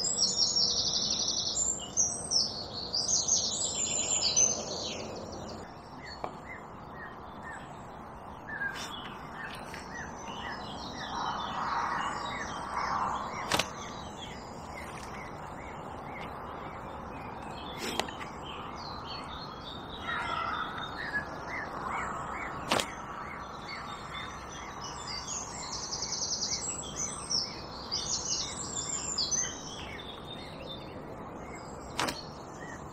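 Songbirds singing and chirping, with bursts of high twittering at the start and again near the end. Three sharp clicks fall in the middle.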